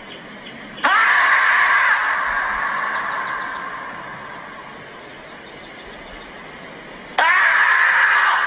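A marmot screaming: a long, loud, high call that starts sharply about a second in and slowly fades, then a second scream near the end.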